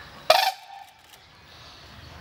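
White-naped crane giving one short, loud call about a third of a second in.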